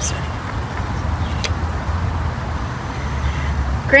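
Steady low rumble of road traffic from nearby streets, swelling a little in the middle.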